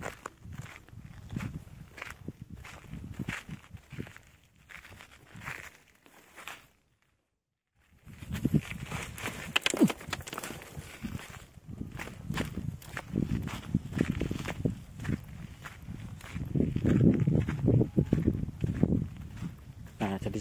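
Footsteps on loose volcanic sand and gravel, an irregular run of steps. The sound cuts out completely for about a second roughly a third of the way through.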